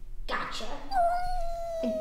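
A cat's single long meow that holds its pitch and then slides slightly lower.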